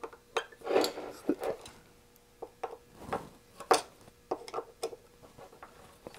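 Small screws being loosened with a hand screwdriver and picked out of a metal instrument case: scattered light clicks, clinks and short scrapes, irregularly spaced.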